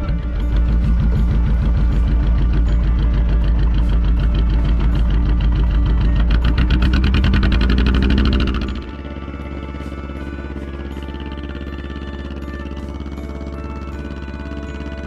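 Boat engine running loudly with a fast, even pulse that rises in pitch about seven to eight seconds in, then the sound drops abruptly, leaving background music with held notes.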